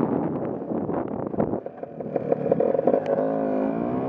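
Small scooter engine running while being ridden, its pitch rising and falling as the throttle changes, with a wavering note in the last second.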